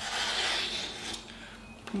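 A Kai Shun kitchen knife slicing through a hand-held sheet of paper: a rasping paper hiss for about a second, fading out, with a light tick or two after it. It is a paper-cutting test of an edge just sharpened on the bottom of a ceramic mug, and the blade cuts only a little.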